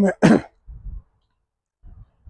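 A man's voice ending a phrase, followed at once by a short throat-clearing sound. After that come only faint low rumbles, with quiet between them.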